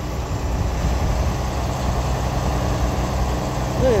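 A vehicle engine running steadily, a low even hum.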